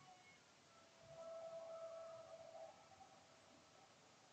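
Near silence, with a faint steady tone that comes in about a second in and fades out after about a second and a half.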